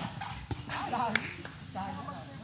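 Sharp slaps of hands striking a volleyball: one at the very start, one about half a second in and another a little after a second, with players' voices calling out between the hits.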